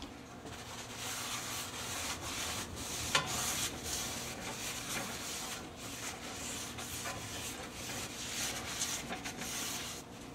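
Paper towel rubbing oil around the bottom of a cast iron baking pan, a steady scrubbing in irregular strokes to grease the pan. A sharp tick about three seconds in.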